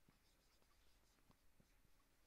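Very faint marker-on-whiteboard writing: a few short scratchy strokes and taps as a word is written by hand, over near-silent room tone.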